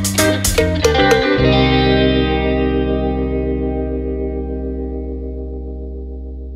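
Music: a guitar plays several quick notes in the first second and a half, then a chord rings on and slowly fades.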